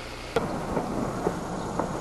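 A sharp click about a third of a second in, then low rumbling, crackling noise.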